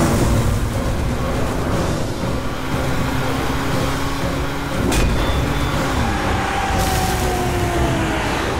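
Car engine running hard as the car skids and drives fast over dirt, a dense low rumble throughout. A sharp hit sounds about five seconds in.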